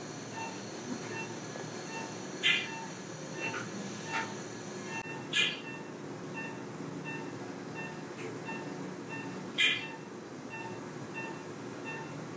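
Operating-room sound: a steady hum of equipment, with a patient monitor beeping at a regular rate. A few brief clicks of instruments fall in between.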